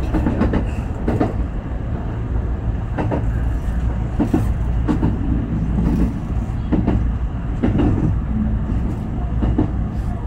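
A JR West 221 series electric train running, heard from inside the train: a steady low rumble with irregular clacks as the wheels pass over rail joints and points.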